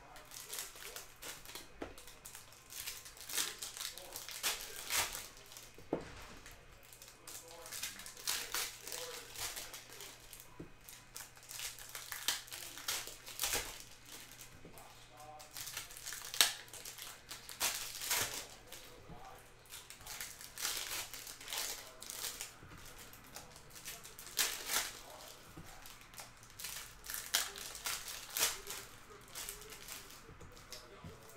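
Foil hockey card pack wrappers crinkling and tearing as the packs are opened and handled, in irregular bursts of rustling. A faint steady hum runs underneath.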